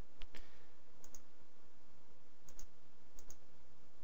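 Computer mouse clicking: short sharp clicks in quick pairs, about four times, over a faint steady hiss.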